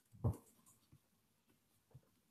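Near silence with faint room tone, broken once about a quarter second in by a short, soft low sound.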